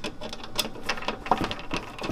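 A screwdriver turning a screw out of a computer power supply's metal casing: a run of small, unevenly spaced clicks.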